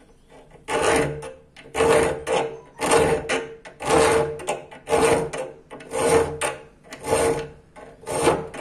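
Round file rasping through the finger ring of a 5160 steel karambit blank held in a vise, smoothing out the rough-cut hole. Seven strokes about a second apart, each carrying a ringing note from the steel.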